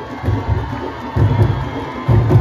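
Candombe drum ensemble of chico, repique and piano drums playing a steady, deep beat, with a crowd cheering over it.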